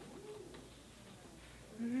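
A quiet pause in a room, then a low hummed 'mm-hmm' of agreement near the end, with a fainter hum a moment into the pause.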